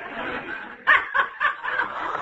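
Laughter on an old radio broadcast recording. It turns into a quick run of short bursts, about three a second, starting about a second in.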